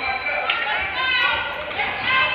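Basketball bouncing on a gym's wooden court during a game, with voices of players and spectators calling out and echoing in the hall.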